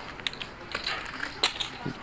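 Poker chips clicking irregularly as a player handles and riffles a stack at the table, with one sharper click about one and a half seconds in.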